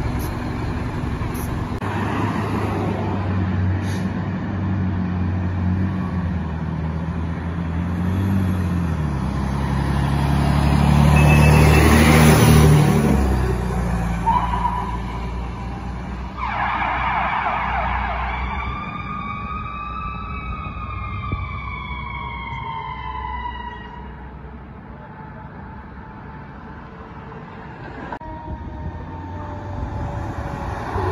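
A fire department air unit truck's engine grows louder as it passes, then fades as it pulls away. It is followed by a siren giving one slow wail that rises and falls, then fades out.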